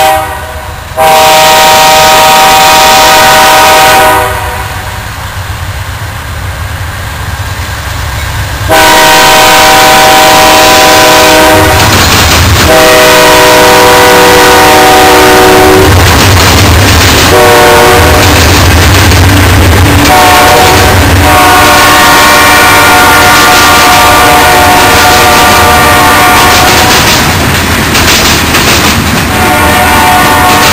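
Horn of a BNSF GE Dash 9-44CW diesel locomotive sounding a chord in a series of long blasts, the last held for several seconds. Under it, the locomotive's diesel engine rumbles as it passes, followed by the clatter of freight cars rolling by.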